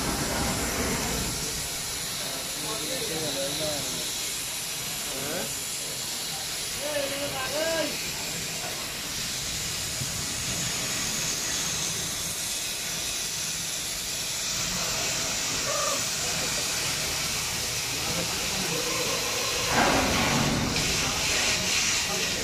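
Steady rushing hiss with faint distant voices; the noise grows louder about twenty seconds in.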